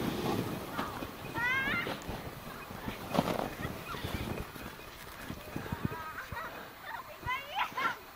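Footsteps crunching through deep snow as someone moves quickly, with two short high-pitched rising shouts from people further off, one early and one near the end.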